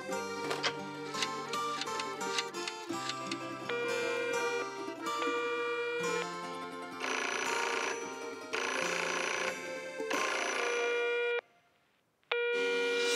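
Cartoon background music, joined in the second half by an old-fashioned telephone bell ringing in three long rings, which cut off suddenly near the end.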